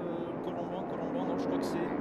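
A pack of motocross motorcycles racing on ice, several engines running at once in an overlapping drone.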